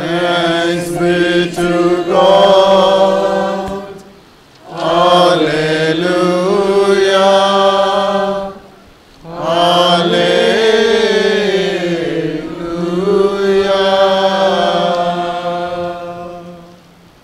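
A man chanting a liturgical prayer in three long phrases with short breaths between. He holds one steady reciting pitch throughout.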